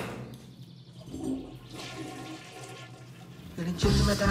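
Toilet flushing: a rush of water, loudest at the start and fading as it drains away.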